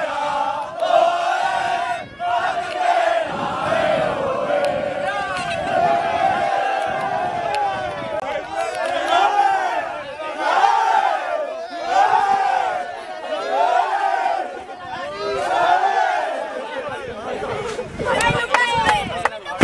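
A group of men chanting and shouting together in celebration, many voices at once, falling into repeated rising-and-falling phrases in the second half.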